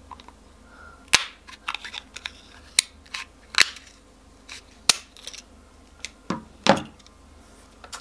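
Scissors cutting a hard plastic milk-bottle lid in half: a series of sharp, irregular snaps and cracks as the blades bite through the plastic, the loudest two near the end.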